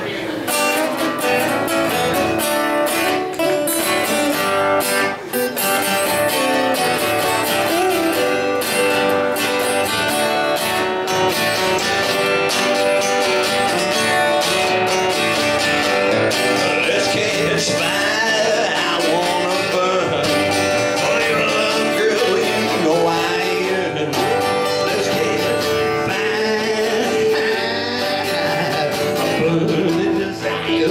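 Two acoustic guitars playing an instrumental passage, one strumming chords steadily while the other plays along.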